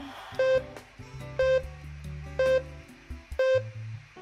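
Countdown timer beeps: four short pitched pips, one each second, over background music.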